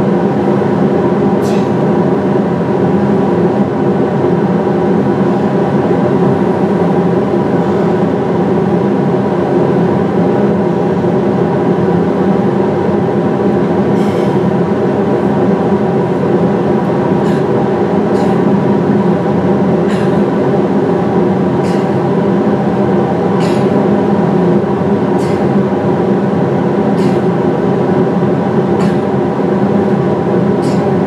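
Played-back recording of two industrial fans used as white noise: a loud, steady drone with several steady hum tones in it.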